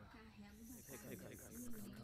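A quiet voice speaks a line of subtitled Japanese anime dialogue. A soft, high hiss runs under it from about half a second in, for roughly a second.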